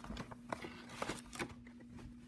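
Faint taps and light clicks of a cardboard trading-card box and foil pack being handled with gloved hands, a few separate small knocks over a faint steady hum.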